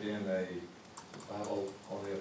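Typing on a laptop keyboard: a quick run of key clicks about a second in, under a voice talking indistinctly.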